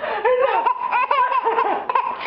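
Six-month-old baby giggling, a run of short, high-pitched laughs in quick succession.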